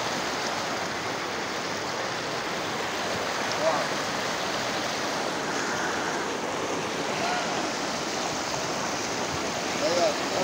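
Shallow river rapids rushing over rocks: a steady whitewater noise.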